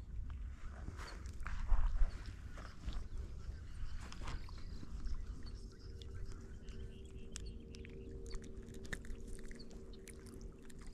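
Wind rumbling on the microphone, with small clicks, ticks and rustles of hands working a soft-plastic grub lure out of a small bass's mouth and two louder knocks early on. A faint steady hum sets in about halfway through.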